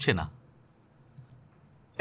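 A man's narrating voice ends a phrase, then a quiet pause broken by two or three faint short clicks a little over a second in.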